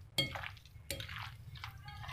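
Metal spoons tossing a mayonnaise-dressed salad in a glass bowl: soft wet stirring with a few sharp clinks of spoon on glass, one just after the start and two about a second in.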